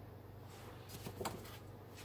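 Faint handling of a hardcover picture book: a few soft rustles and taps about a second in as a page is turned, over a low steady hum.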